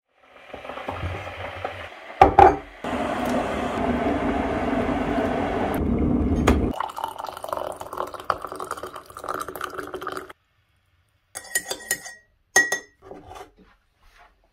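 Tea being made in a ceramic mug. A loud steady rush of water runs for a few seconds, then hot water is poured into the mug over a tea bag and milk. Near the end a teaspoon clinks several times against the mug as the tea is stirred.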